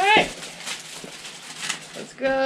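A short laugh right at the start, then low room hiss with faint rustles and light taps as a cardboard mystery box is handled on a table.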